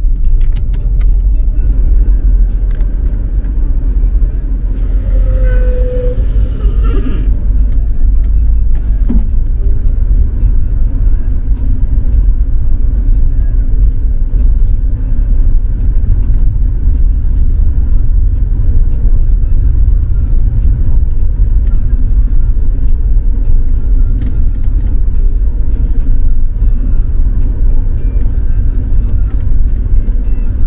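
Cabin road noise of a car driving over an unpaved dirt road: a loud, steady low rumble with many small clicks throughout.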